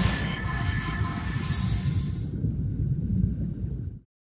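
Sound-effect sting for an animated logo: a whoosh over a deep, steady rumble. The high hiss drops away a little over two seconds in, and the rumble cuts off suddenly at the end.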